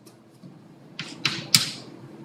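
Chalk writing on a blackboard: three quick, sharp taps and strokes of the chalk about a second in, the third the loudest.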